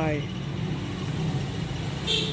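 Steady low engine hum, like a motor vehicle idling, with the last of a man's word trailing off at the very start.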